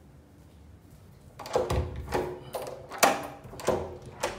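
Dachshund barking at a caller at the front door: about five sharp barks, beginning a little over a second in and coming roughly every half second.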